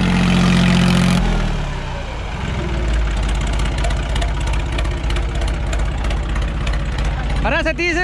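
Massey Ferguson 9000 tractor's diesel engine running at high revs, then about a second in its pitch suddenly drops and it settles into a lower, rougher steady drone as the tractor works in tight circles in the soil.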